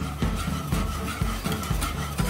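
Wire whisk stirring thickening custard in a metal kadhai, knocking and scraping against the pan in a steady rhythm of about three strokes a second.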